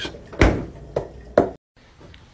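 Stainless-steel French-door refrigerator door being shut: a loud thump about half a second in, then two lighter knocks.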